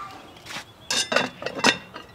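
Cast iron Dutch oven lid, loaded with coals, set back onto the 8-inch Lodge pot with a metal lid lifter. A light clink, then a quick cluster of metal clanks about a second in, with a brief ring.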